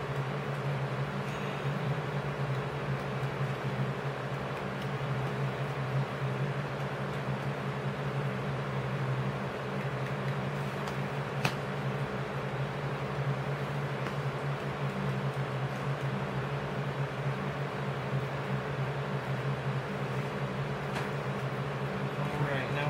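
A steady low mechanical hum over an even hiss, with one sharp click about halfway through.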